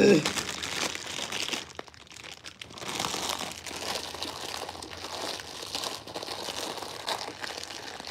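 Thin plastic bag crinkling and rustling in irregular crackles as it is handled and opened around a piece of baked food.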